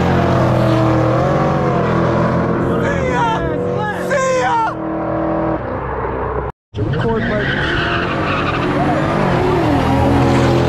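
A high-performance car engine running hard under acceleration, its pitch wavering up and down. High squealing glides sound about three to four and a half seconds in and again near the end. The sound cuts out completely for a moment about six and a half seconds in.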